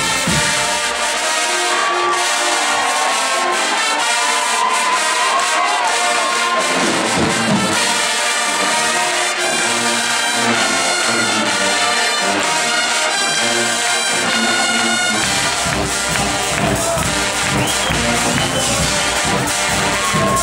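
Guggenmusik carnival brass band playing live: massed trumpets and trombones with low brass and drums. The bass and drums drop out about a second in and come back in at about fifteen seconds.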